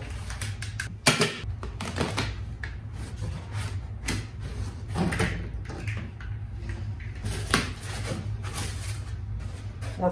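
Unpacking noises: knocks, scrapes and rustles as equipment and foam packing are lifted out of a wooden shipping crate, with the loudest knock about a second in. A low steady hum underneath.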